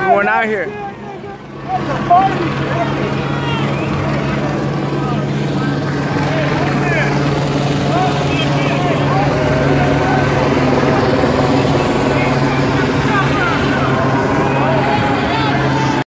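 Crowd of people talking and calling out in a street, with many scattered voices over a steady low mechanical drone. There is a brief dip in loudness about a second in.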